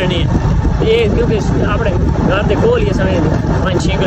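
Steady low rumble of a moving motorcycle with wind buffeting the microphone, under a man's talking voice.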